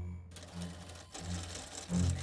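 A rapid mechanical clattering, a machine sound effect, sets in a few tenths of a second in. Under it a low pulse repeats about every two-thirds of a second.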